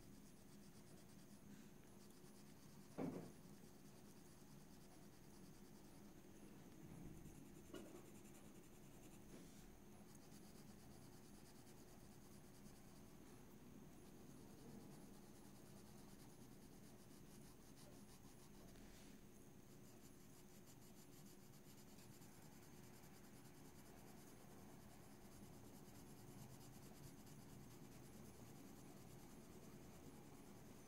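Faint scratching of a Caran d'Ache Luminance colored pencil shading on paper, with a single thump about three seconds in and a softer knock near eight seconds.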